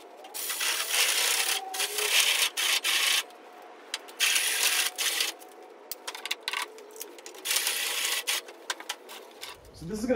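Cordless drill boring through clamped metal pieces. It runs in four bursts of one to three seconds each, with short pauses between.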